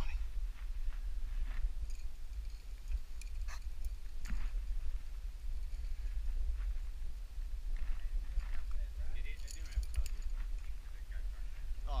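Steady low rumble of wind and movement on a helmet camera's microphone, with a few brief scuffs of hands on sandstone as a climber moves up the rock.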